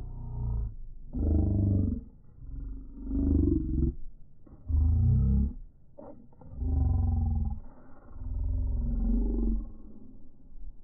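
Slowed-down voice audio: deep, drawn-out roaring in about six separate bursts of under a second each, with short gaps between them.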